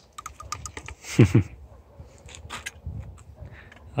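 Light clicks and clacks of a shotgun being handled and reloaded between shots, in an irregular run over the first three seconds, with a short murmured syllable about a second in.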